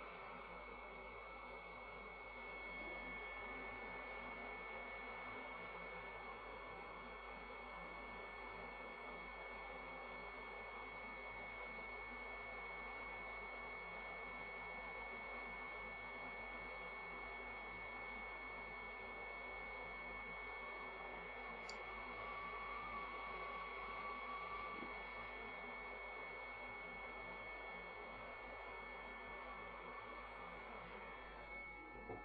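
Hot air rework gun blowing steadily on a circuit board to melt solder: a faint, even rushing hiss with a constant high whine from its fan.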